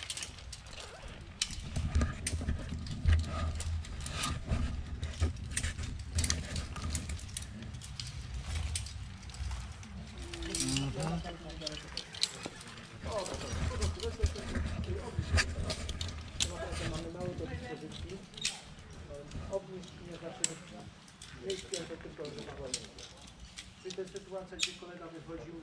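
Metal rope-rescue hardware, carabiners and rope clamps, clicking and clinking in irregular sharp ticks throughout, over a low rumble that stops about 17 seconds in.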